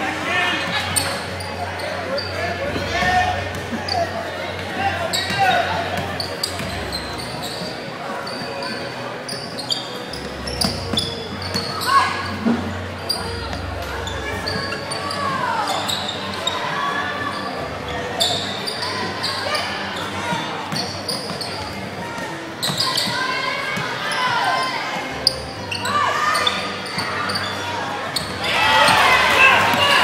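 Basketball being dribbled on a hardwood court, sharp bounces echoing in a large gym, with voices of players and spectators throughout and a louder burst of voices near the end.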